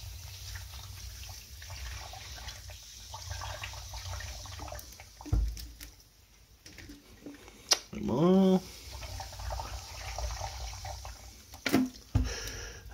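Carbonated water poured from a plastic bottle into a glass electric kettle, running and fizzing steadily for about five seconds. A thump follows as the pour ends, then a click and a short rising hum about eight seconds in, and another click near the end.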